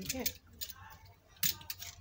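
Craft knife cutting through a clear PVC sheet: faint light scraping, then one sharp click about one and a half seconds in.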